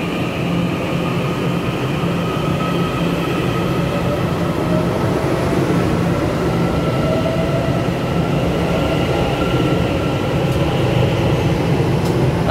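TEMU2000 Puyuma Express tilting electric multiple unit pulling away along an underground platform: a steady rumble of wheels and running gear, with electric traction motor whine rising slightly in pitch as it picks up speed. The sound grows gradually louder.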